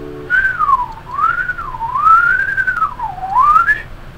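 A man whistling a short wavering tune, the pitch sliding up and down in a few smooth arcs and ending on a rise. An acoustic guitar chord stops just before the whistling starts.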